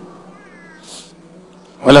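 A pause in a man's speech with a steady low hum. Early on there is a faint, short, high cry that falls in pitch, and soon after a brief hiss. Near the end a man's voice says "olha".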